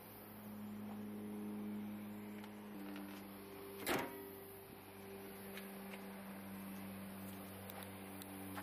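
The hood of a Honda Pilot is closed with a single sharp slam about four seconds in. A steady low hum runs throughout.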